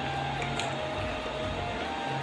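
Soft background music with held notes that step slowly in pitch.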